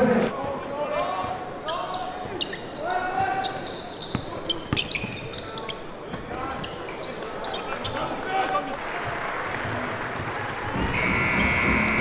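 Basketball game sound in a gym: a ball bouncing, sneakers squeaking on the hardwood and scattered shouts and crowd voices, then a steady electronic horn starting about a second before the end, the game-ending buzzer as the clock runs out.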